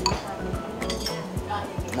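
Background music with a steady beat, with a spoon clinking against a ceramic bowl, most sharply right at the start.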